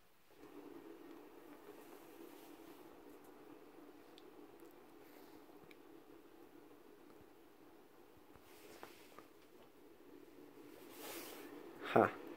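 Faint steady hum of a small Adams-type pulsed electric motor, its rotor turning after a hand spin with the drive coils being pulsed. It starts just after the beginning and holds, fading a little, with a faint rustle near the end.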